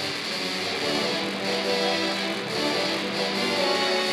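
A low-brass ensemble of tubas and euphoniums playing a metal-style piece together: several parts holding notes that shift every second or so at a steady, fairly loud level.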